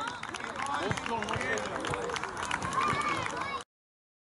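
Outdoor chatter and shouts of young children's voices, with scattered sharp knocks. The sound cuts off suddenly near the end.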